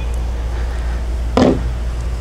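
Steady low outdoor rumble, with one short knock about one and a half seconds in.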